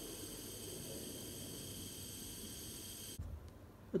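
Running thermal-decomposition apparatus: a steady low rushing noise under a faint hiss, which cuts off abruptly near the end. The sound is either the gas burner heating the carbonate or carbon dioxide bubbling through the lime water.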